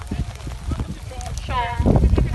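Wind rumbling on the microphone, with scattered light knocks and a short voice-like call about one and a half seconds in.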